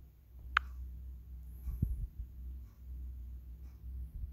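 Quiet room tone with a steady low hum, broken by one sharp click about half a second in and a short dull thump just before two seconds.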